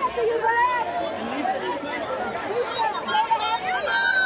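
Crowd chatter: many voices talking over one another, with no single voice standing out.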